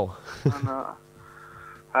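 Speech from a radio interview: a man's word ends, a short vocal sound falling in pitch follows about half a second in, then a pause over a faint steady hum before talking resumes at the end.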